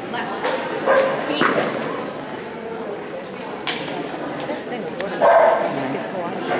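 Border collie giving short barks while it runs an agility course, the loudest a little past five seconds in, over the echoing murmur of people talking in a large hall.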